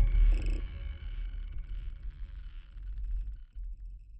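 Deep low rumble of a film trailer's closing sound design, left over as the score ends and fading steadily away.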